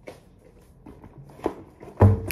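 Light taps and rustling from a notebook being handled and put into a small backpack, with one sharper knock about one and a half seconds in.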